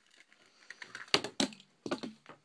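Plastic blister bubble being pried and torn off a Hot Wheels cardboard card: faint crinkling with three or four sharp cracks of the plastic, the loudest a little over a second in.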